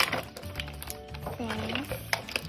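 Light crackles and clicks from clear plastic toy packaging being handled, over steady background music. A brief vocal sound comes near the end.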